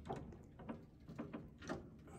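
An upright piano being tipped back onto a steel piano tilter: a handful of knocks and clunks from the wooden case and the tilter's metal frame as the weight shifts, the loudest a little before the end.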